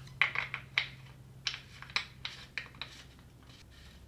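Primary cover access plug on a Harley-Davidson Ironhead Sportster being screwed in by hand: a series of light, irregular clicks and small scrapes.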